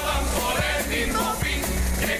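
Live comparsa music: Spanish guitars and drum beats with male voices singing over them.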